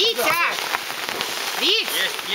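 Steady rain pattering on a tarp and umbrella overhead, a dense run of small drop ticks.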